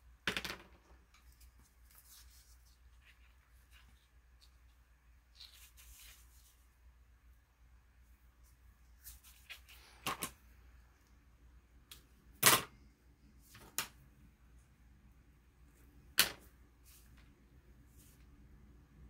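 Paper and card stock being handled on a cutting mat while hand-stitching: a handful of short rustles and taps, the sharpest about twelve and a half seconds in, with quiet between them.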